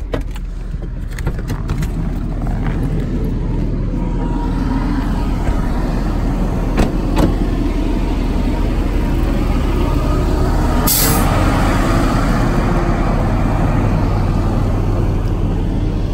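Vehicle and heavy construction-machinery engines running in a steady low rumble that slowly grows louder, with a couple of knocks about seven seconds in and a short, sharp hiss about eleven seconds in.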